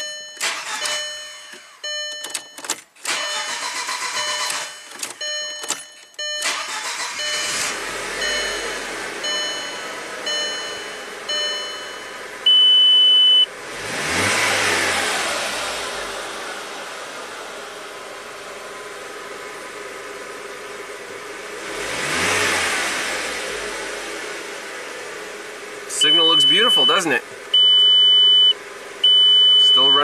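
A 2003 VW Passat 1.8 turbo inline-four being cranked over and firing after a long crank: it revs up about halfway through and again a few seconds later, settling back each time. A hard start that the mechanic blames on the camshaft timing being off, not on the cam sensor. A short electronic beep sounds about once a second at first, ending in a longer tone, and returns near the end.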